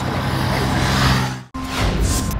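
A motorcycle passing on the road, its engine hum and road noise swelling and then fading. About one and a half seconds in it cuts off abruptly, and a whoosh sound effect with music begins.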